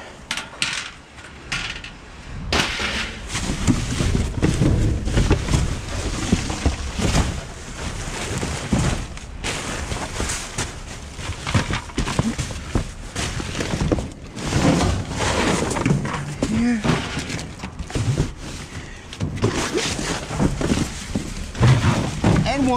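Rummaging through a metal dumpster: cardboard boxes, plastic bags and vent grilles being shifted and handled, with irregular crinkling, scraping and thumps.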